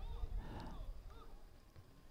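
Faint open-air ambience of an amateur football pitch, with a few distant players' voices calling, dying away to near silence near the end.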